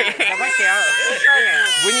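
A person crying in a long, high-pitched wail that slowly falls in pitch, over men talking.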